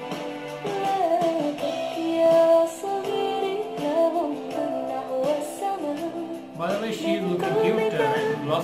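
A woman singing in Arabic over sustained electronic keyboard chords. Her voice comes in about a second in, held notes gliding between pitches.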